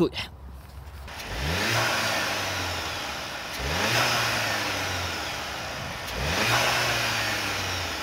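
Skoda Octavia RS's 2.0 TSI turbocharged four-cylinder petrol engine, revved three times with the car standing, heard at the open engine bay. Each rev climbs quickly, holds briefly at higher revs, then falls back toward idle.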